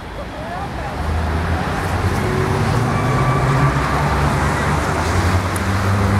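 Road traffic: a motor vehicle's low engine hum and road noise build up about a second in and then hold steady.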